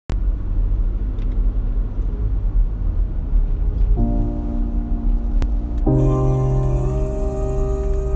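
Low, steady rumble of a car driving. Slow music with held chords comes in about four seconds in and grows fuller near six seconds.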